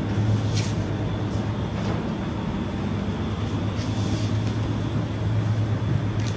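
Steady low hum and hiss of a supermarket's refrigerated display cases and ventilation, with a faint tick or two of goods being handled.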